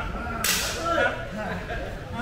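A single sharp smack about half a second in, with a hissing tail that fades over about half a second, over shouting voices.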